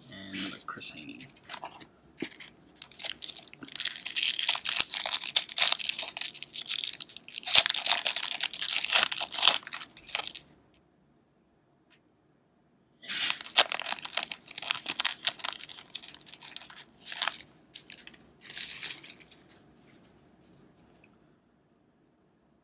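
The foil wrapper of a 1992 O-Pee-Chee Premier baseball card pack being torn open and crinkled in the hands, a loud crackling in two long stretches with a pause of a couple of seconds between them. Fainter rustling of cards being handled comes first.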